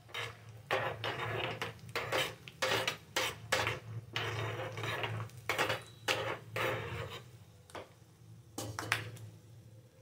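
Steel spoon scraping and clinking against a small steel tempering pan while stirring peanuts and seeds frying in oil, in irregular strokes about two a second. The strokes thin out about seven seconds in and stop.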